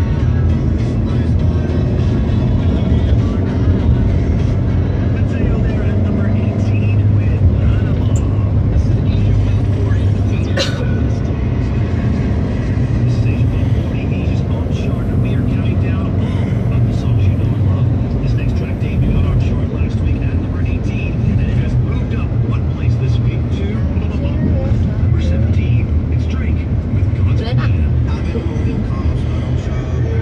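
Steady engine and road noise inside a moving Toyota car's cabin at cruising speed, a continuous low rumble, with music playing along with it.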